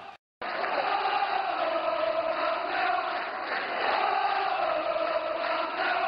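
Large stadium crowd of football supporters chanting together, a dense, steady mass of voices. It starts after a split-second gap of silence at the very beginning.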